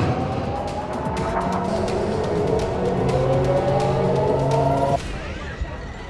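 A warning siren winding up, its pitch rising slowly, over dramatic background music. The siren cuts off abruptly about five seconds in.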